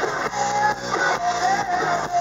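Hard rock band playing live: distorted electric guitars, bass and drums, with a held, wavering melody line over them.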